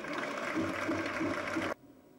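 Tennis crowd applauding after a point, a dense patter of clapping that cuts off suddenly near the end.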